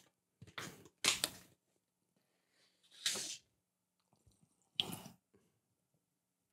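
A few short crinkling rustles from a plastic pack being handled close to the microphone, about four in all, with faint ticks between them, as smoking material is taken out for rolling.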